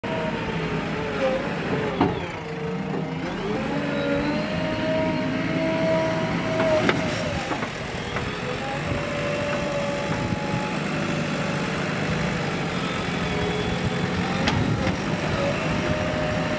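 JCB 3DX backhoe loader's diesel engine running under working load, its pitch rising and falling as the hydraulics move the buckets, with a few sharp knocks.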